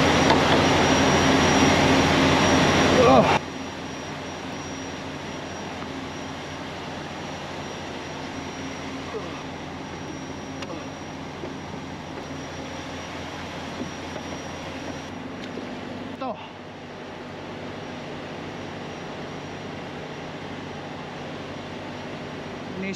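Steady hum of an idling heavy truck engine, louder and rougher for the first three seconds, then dropping abruptly to a quieter steady drone.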